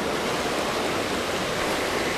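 Shallow river running steadily over rocks and stones.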